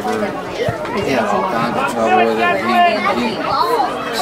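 Indistinct overlapping chatter of spectators' voices, with no clear words.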